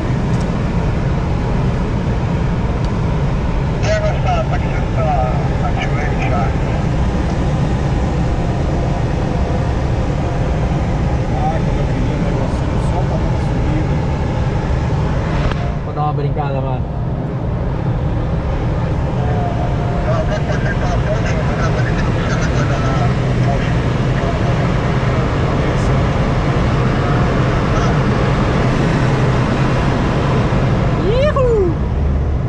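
Steady, loud rush of air in a glider cockpit in flight, heaviest in the low end, with a brief dip about halfway through. Faint, indistinct voices come and go under it.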